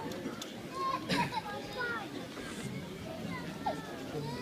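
Crowd chatter: many overlapping voices, with children's voices and calls rising above the general talk, one louder high call about a second in.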